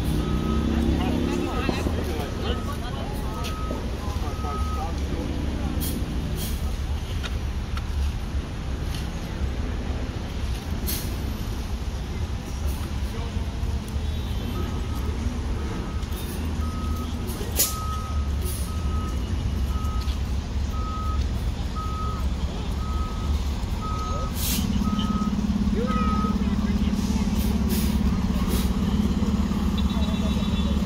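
Fire engine's diesel running with its backup alarm beeping about once a second, in a short spell at the start and a longer one in the middle, with a few sharp hisses from its air brakes. Near the end the engine's drone grows louder and steadier.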